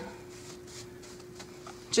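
Quiet room tone with a steady, low-pitched hum running throughout, and faint rustling.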